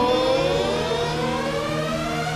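A slow rising siren-like glide, several tones climbing together, over steady held notes in live rock-concert music.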